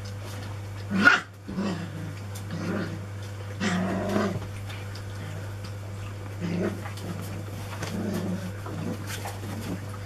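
Four-week-old Anglo Wulfdog puppies growling in play while chewing and tugging at toys. The growls come in short bursts every second or two, and the loudest is about a second in.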